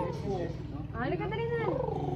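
A small child whining with two drawn-out, high-pitched cries that rise and fall, the second about a second in. The child is fussing, reluctant to jump.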